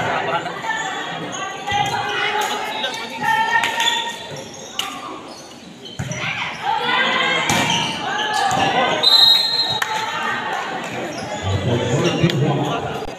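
Volleyball rally on an indoor wooden court, echoing in a large gymnasium. There are several sharp knocks of the ball being struck and bouncing, over continual shouting and calling from players and spectators. A brief high squeal comes about nine seconds in.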